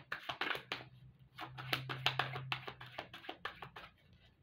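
A deck of tarot cards shuffled by hand: a quick, uneven run of card snaps and clicks, with a brief pause about a second in.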